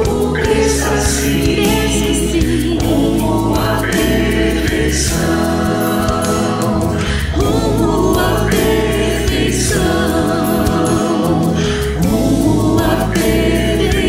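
A mixed choir of men and women singing a Christian worship song in unison. Keyboard, acoustic guitar, bass guitar and drums accompany them, and the music goes on steadily throughout.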